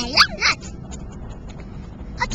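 A few short, high-pitched dog-like yips and whimpers in the first half second, a child's voice playing the part of a toy dog, then the steady low rumble of riding in the back of a moving pickup truck.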